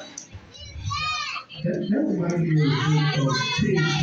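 Spectators' voices at ringside: a child's high shout about a second in, then a long, held low voice from about halfway.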